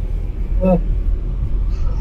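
Steady low rumble of engine and road noise inside the cabin of a moving Fiat Egea Cross with a 1.6 Multijet diesel engine.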